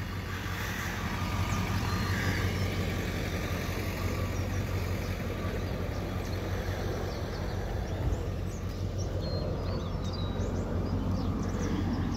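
Tow vehicle's engine idling steadily: an even low hum under outdoor noise.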